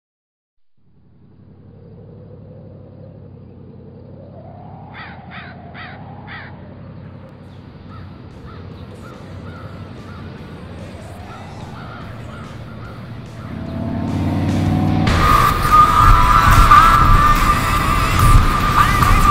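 Intro of a hard rock recording: a low drone fades in and slowly swells, with four short harsh calls about five seconds in and slow gliding tones over it. About fifteen seconds in the full band comes in loudly, with a held high note over it.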